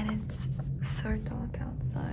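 A person whispering in short soft phrases, with hissy 's' sounds, over a steady low hum.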